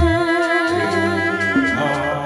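Sundanese jaipong accompaniment: a singer holds one long note with a slow wavering pitch while the kendang drums fall silent, and light percussion ticks return near the end.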